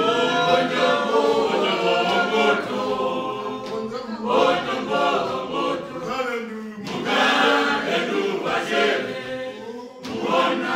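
A small group of voices singing together unaccompanied, a church congregation's song in phrases with short breaths between them.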